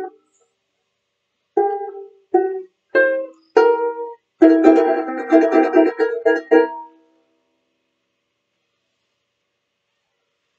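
Banjolele (banjo-ukulele) played: four single plucked notes a little over half a second apart, then a quick run of strummed chords that stops about seven seconds in.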